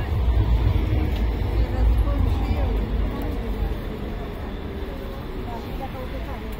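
Street ambience on a busy city sidewalk: passers-by talking over a heavy low rumble that eases off about halfway through.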